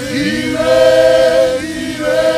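A group of voices singing a slow worship song together, holding long notes in a few pitches at once.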